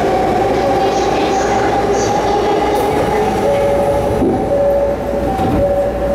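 Inside a Rinkai Line electric commuter train as it runs and brakes into a station: a steady rumble of wheels and car body, with the motors' whine held in several steady tones. The sound eases off in the last second or so as the train slows to a stop.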